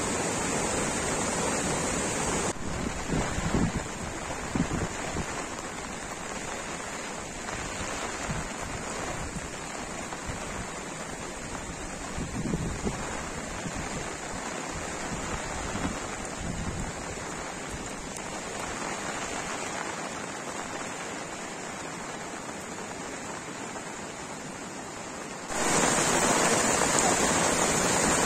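Floodwater rushing across a road: a steady, noisy rush of moving water, with wind gusting on the microphone a few seconds in. The sound drops abruptly to a quieter rush a couple of seconds in and jumps back louder near the end.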